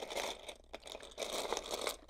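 Hands rummaging through loose LEGO pieces: a busy rustle of small plastic clicks and scrapes that swells and fades as they sift for a part.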